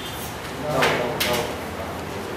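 Murmur of voices in a busy room, with one voice rising briefly a little under a second in and a single sharp knock just after it.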